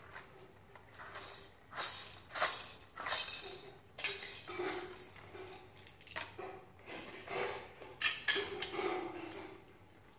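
Hard plastic toy pieces clicking and clattering against each other and a plastic base as they are handled and fitted together, in a string of irregular knocks.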